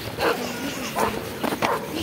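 A dog barking, three short barks.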